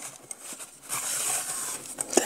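Metal cake-release arm of an aluminium layer-cake pan being swept around the inside of the pan, a soft, steady metal scrape that starts about half a second in.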